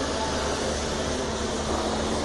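Steady rumbling background noise with a faint low hum and no distinct events.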